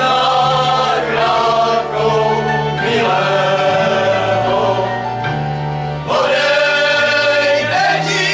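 A group of men singing a slow Slovak verbunk song together in long, held phrases, with short breaks between phrases about two, three and six seconds in.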